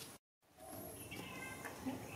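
Sound cuts out completely for a moment near the start, then a few faint, short high-pitched chirping calls from a small animal over a quiet background.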